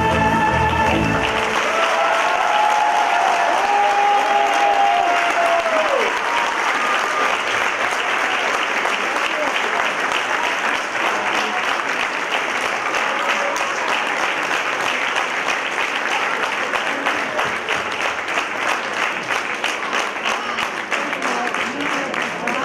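Dance music cuts off about a second in, and an audience applauds. The clapping thins toward the end into more separate claps.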